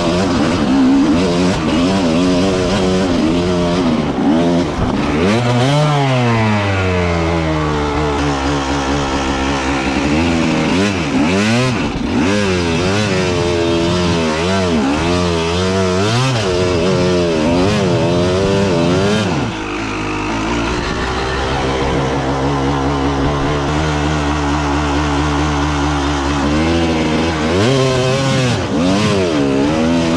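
Enduro dirt bike engine running hard, its pitch rising and falling again and again as the throttle is opened and closed, with a few stretches of steadier running in between.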